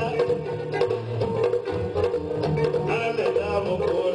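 Live West African band music: a kora's plucked strings over a drum kit and electric guitar, playing a steady groove.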